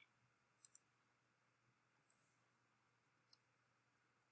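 Near silence broken by a few faint computer mouse clicks: a quick pair about two-thirds of a second in and a single click late on.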